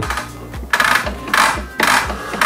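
Bevel mechanism of a Makita LS1219L slide compound mitre saw being adjusted by hand: three short mechanical scrapes about half a second apart, the first near the middle, over background music.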